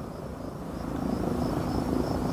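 Twin electric motors and propellers of an E-flite EC-1500 RC cargo plane in flight, a steady hum growing louder as the plane comes closer.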